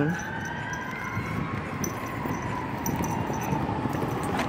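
Fire truck siren wailing, one slow rise and fall in pitch, heard over steady street traffic noise.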